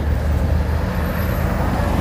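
Road traffic noise: a motor vehicle's engine running close by, a steady low rumble.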